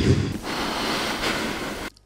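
A steady rushing noise without any pitch that cuts off suddenly near the end.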